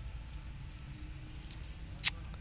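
Faint outdoor background noise: a low, uneven rumble with one short, sharp click about one and a half seconds in.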